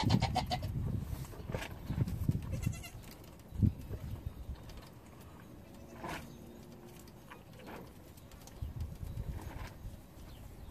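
Young Nigerian Dwarf goat kids bleating now and then, with low rustling of handling and a single thump a little over a third of the way in.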